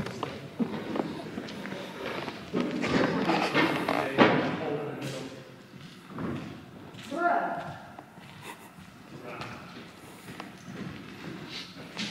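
Indistinct voices echoing in a large empty gymnasium, with footsteps and knocks on the bare wooden floor; a sharp thud about four seconds in is the loudest sound.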